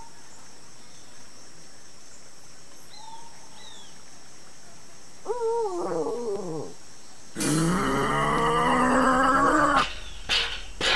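A cartoon dinosaur sound effect for a felt-puppet dinosaur: a falling, moaning cry about five seconds in, then a louder, rough roar held for over two seconds near the end. A few faint short chirps come before it.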